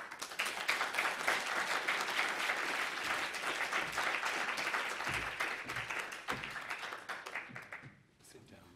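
Lecture-theatre audience applauding, beginning right after the speaker's closing thanks and dying away near the end.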